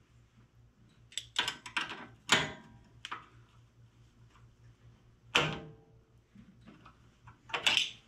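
Hand tools clinking on the rocker arm of a Briggs & Stratton Intek OHV engine while its valve lash is set: a wrench and feeler gauge make a handful of scattered metal clicks and clanks, some with a short ring, the strongest about five seconds in. A steady low hum runs beneath.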